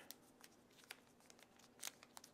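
Faint crinkles and small clicks of a plastic protective film being peeled off a phone's body, with a louder tick about a second in and another near the end.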